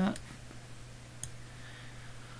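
A single computer mouse button click about a second in, over a steady low electrical hum.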